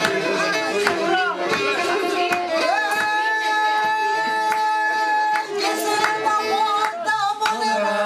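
Pontic lyra (kemençe) playing a folk tune while people sing and clap along in time, with one long held note in the middle.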